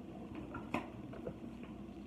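A few faint, light clicks and taps of pens and a marker being handled, with low room hum.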